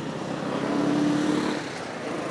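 Motor traffic running steadily, with one vehicle passing close by, loudest in the middle and dying away near the end.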